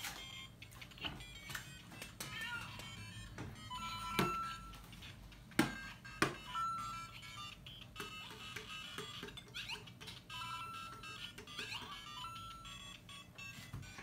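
LEGO Super Mario interactive figure's built-in speaker playing its game music and short electronic sound effects, faint, with a few quick glides in pitch. Several sharp knocks as the plastic figure is set down on the bricks, the loudest about halfway.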